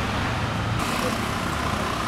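Street traffic noise from passing motor vehicles: a steady engine and road hum, with a higher steady tone and brighter noise joining just under a second in.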